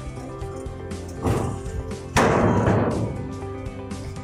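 A steel gooseneck-trailer loading ramp is folded down and lands with a knock just over a second in, then a heavy metal impact at about two seconds that rings out for about a second. Background music plays throughout.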